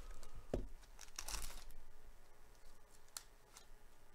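Foil trading-card pack wrapper torn open by hand, with a short rasp of tearing and crinkling about a second in, then a couple of light clicks as the cards are handled.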